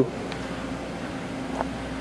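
Steady ventilation hum: an even whoosh of moving air with a constant low drone underneath.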